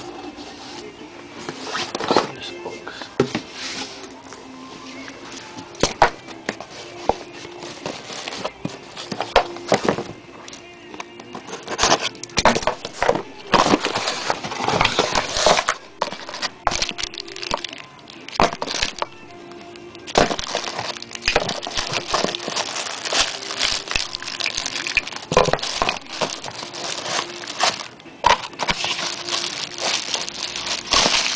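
Plastic wrapping and cardboard packaging crinkling and rustling in irregular bursts as speaker parts are lifted out of their box, with music playing in the background.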